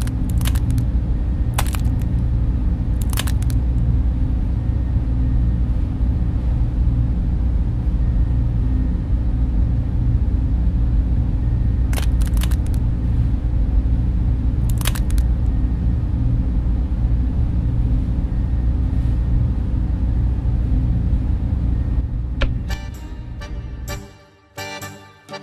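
A loud, steady low droning hum, with a few short clicks scattered through it. Near the end the hum breaks up into a quick run of clicks and drops away.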